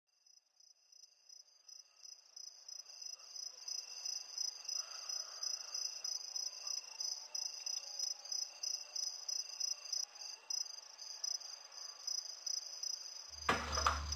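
Crickets chirping in a steady pulsing rhythm, about two to three chirps a second, fading in over the first few seconds. Near the end, a loud low hum and a rush of noise cut in over them.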